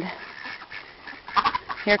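Ducks quacking, a quick run of short calls in the second half.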